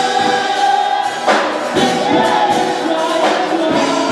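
Gospel choir singing together into microphones, holding long notes that change pitch every second or so.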